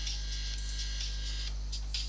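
Steady low electrical hum with room tone on a desk microphone, and a faint thin high tone that dies away about one and a half seconds in.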